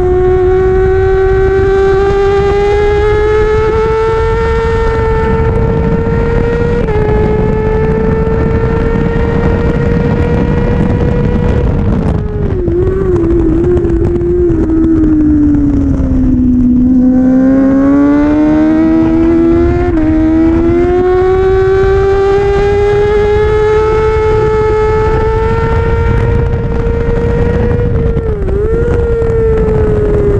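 Kawasaki ZX-6R 636 inline-four engine running hard on a track lap, recorded onboard with wind rushing past the microphone. The revs climb with a short dip for a gear change about seven seconds in, fall away unsteadily through the middle, then climb again, with another brief dip near the end.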